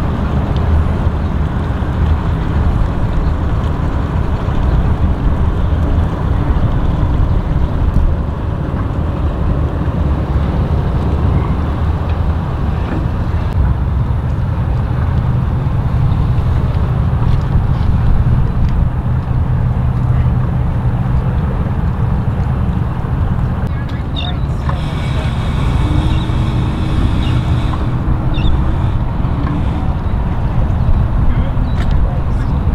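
Steady low rumble of idling outboard boat engines, mixed with wind on the microphone; a brief higher tone comes in near the end.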